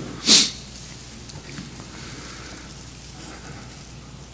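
A man's single short, sharp breath in at the pulpit microphone, a sniff-like rush of air about a third of a second in, then steady room tone with a low hum.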